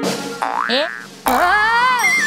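Cartoon sound effects: a short springy boing that rises in pitch about half a second in, then a louder ringing tone that starts suddenly and rises and arches in pitch over the second half.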